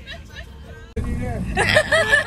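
Several women's voices chattering and laughing inside a moving van. About a second in, the sound cuts abruptly to a louder low vehicle rumble with voices over it.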